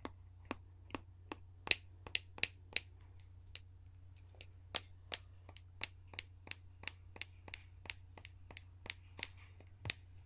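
Sharp clicks and taps from a small hand-held tube worked close to the microphone, about two to three a second at an uneven pace, with a short pause near the middle.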